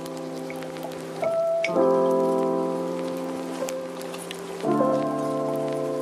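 Lofi hip hop track: soft sustained keyboard chords with no drums, the chord changing about two seconds in and again near five seconds, over a layer of rain patter.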